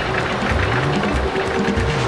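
Background music for a cartoon action scene, with a steady, pulsing low beat.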